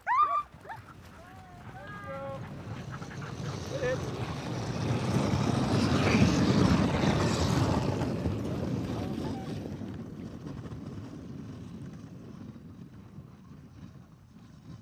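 Harnessed sled dogs giving a loud, high, rising yelp at the start and a few shorter whines over the next few seconds. Then the dog team and loaded sled rush past close by: a swishing of runners and paws on snow that swells to its loudest about six to eight seconds in and fades away.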